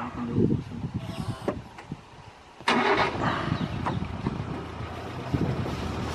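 A vehicle engine starts with a sudden loud catch about two and a half seconds in, then keeps running steadily.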